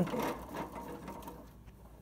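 Clear plastic hamster wheel rattling in a rapid, even patter as a hamster runs in it, growing quieter in the last half second.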